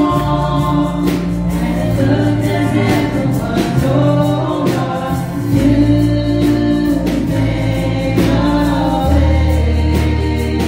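Gospel worship song sung by three women in harmony into microphones, over electronic keyboard accompaniment with sustained bass notes and a steady beat.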